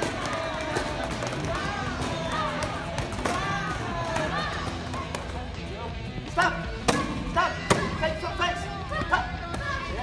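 Taekwondo kicks striking hand-held kick paddles: a quick series of sharp smacks in the second half, over background music and voices.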